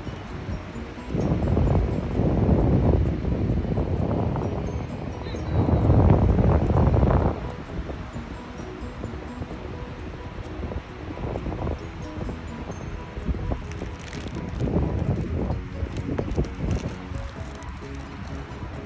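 Wind blowing across the phone's microphone: two strong gusts in the first half, then a lower, steadier rush of wind.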